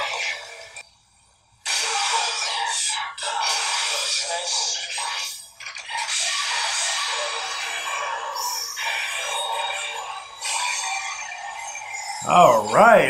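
Soundtrack of a tokusatsu transformation scene: electronic music with a transformation device's voice callouts, the bass cut away so it sounds thin. It drops out briefly about a second in, then comes back and runs on.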